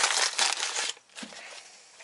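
A shop towel scrunched and rubbed between the hands: a loud crinkly rustle for about the first second, then only faint handling sounds.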